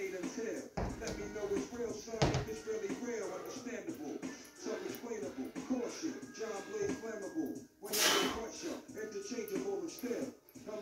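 A hip-hop track playing, a male voice rapping over the beat. Two heavy thuds come about one and two seconds in, kettlebells set down on the floor.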